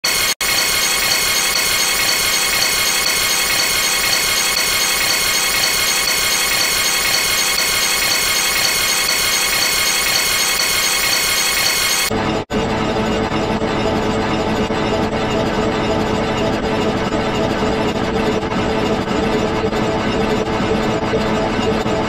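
Loud, harsh, distorted sound track of an edited logo animation, running dense and unbroken. It drops out for an instant just before half a second in. About twelve seconds in it turns abruptly duller and lower, with another brief dropout right after the change.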